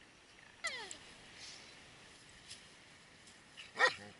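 German Shepherd dog vocalizing: a high whine that slides down in pitch about half a second in, then a short, louder cry near the end.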